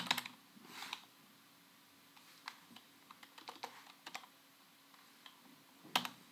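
Faint, irregular keystrokes on a computer keyboard: a dozen or so separate clicks with pauses between them, the sharpest right at the start and just before the end.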